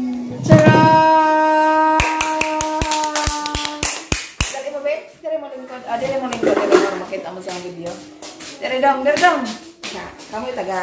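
A held musical note rings for about three and a half seconds, with a run of sharp ticks at about four a second in its second half. Voices follow.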